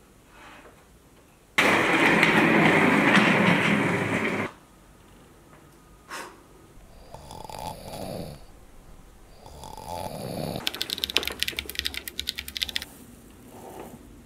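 A man snoring in several long breaths: the loudest snore comes about two seconds in, then softer ones, and a fast rattling snore near the end.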